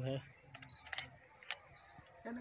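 A few short, sharp clicks follow a brief spoken word, the loudest single click about a second and a half in, over a steady faint high-pitched tone.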